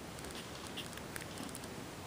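Quiet background hiss with a few faint, scattered ticks.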